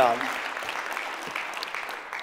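Congregation applauding, the clapping slowly fading away.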